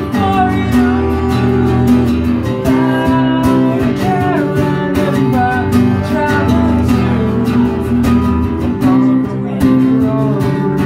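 An acoustic guitar strummed steadily in chords, with a man singing a melody over it.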